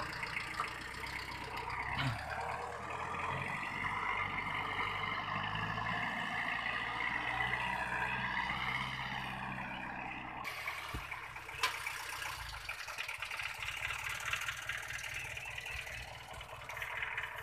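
VST Shakti MT 270 mini tractor's diesel engine running steadily under load as it pulls a seed drill, its pitch rising slightly just before it cuts off abruptly about ten seconds in. After that only a steady hiss remains.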